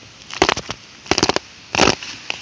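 Roots cracking and snapping as a plastic bucket, rooted into the ground through its bottom, is wrenched loose. The cracks come in three quick clusters, the last one, near the end, the loudest.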